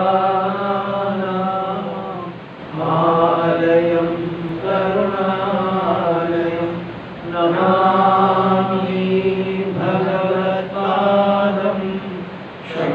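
A man chanting a Sanskrit invocation on a nearly level pitch, in about five long, held phrases with short pauses for breath between them.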